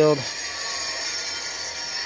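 Steady background hiss with a faint, continuous high-pitched whine, after a man's voice trails off at the very start.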